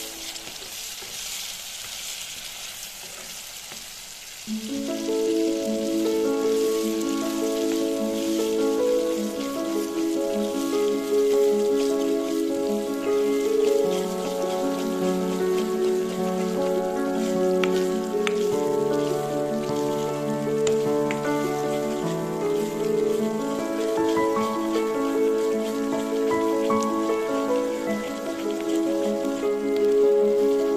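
Thick tamarind paste sizzling and bubbling in hot oil in a pan, a steady fine crackle, while a wooden spatula stirs it. Background instrumental music comes in about four and a half seconds in and is louder than the sizzling from then on.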